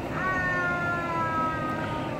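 A child's voice holds one long, high note for about a second and a half, sliding slowly down in pitch.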